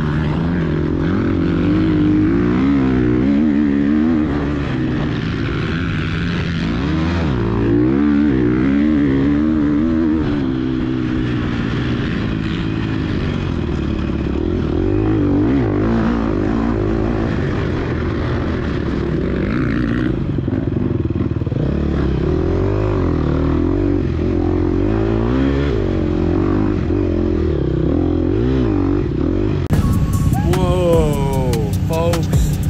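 2022 Gas Gas EX250F four-stroke single-cylinder dirt bike engine running hard under way, heard from on the bike, its pitch rising and falling again and again with throttle and gear changes.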